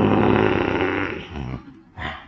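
A man's voice making a rough, drawn-out growl of about a second and a half, mimicking a bear, followed by a shorter grunt.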